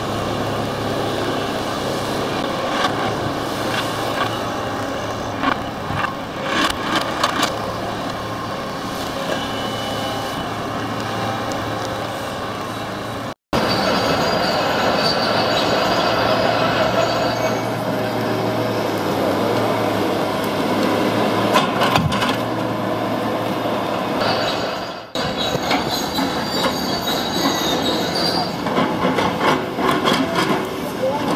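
Diesel engine of a John Deere 2454D tracked log loader running steadily while its grapple handles logs, with high whining at times and logs knocking. The sound drops out for an instant about halfway through.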